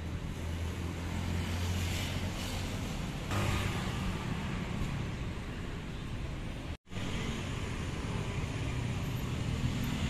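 Street traffic passing by: a steady wash of vehicle noise with a low rumble, cutting out briefly about seven seconds in.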